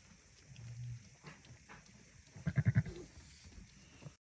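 A ewe making low, closed-mouth murmuring calls to her newborn lamb as she licks it dry: a short low hum about half a second in, then a louder, rapid fluttering low call a little past halfway.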